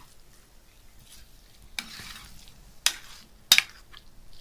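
Metal spoon stirring minced chicken frying in a pan, with a soft sizzle; near the end the spoon strikes the pan twice, two sharp clacks that are the loudest sounds.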